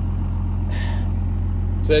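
Ram 3500's 5.9 L Cummins turbo-diesel inline-six running with a steady low drone, heard from inside the cab.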